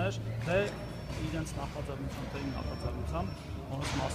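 A man speaking Armenian at close range, with a low steady hum underneath.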